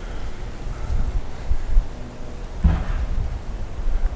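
Wind buffeting the camera's microphone outdoors: a steady low rumble with uneven gusts, and a brief louder moment about two and a half seconds in.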